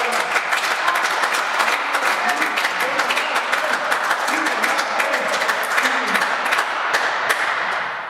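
Spectators applauding at a table tennis match: a dense patter of clapping that starts abruptly and dies away near the end, with a few voices calling out in between.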